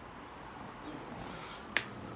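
A single short, sharp click near the end, over faint room tone.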